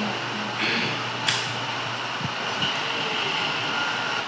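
Steady low hum under a hiss of background noise, with a single faint click just over a second in.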